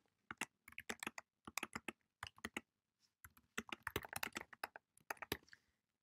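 Computer keyboard typing, faint: two quick runs of keystrokes with a short pause of about half a second between them.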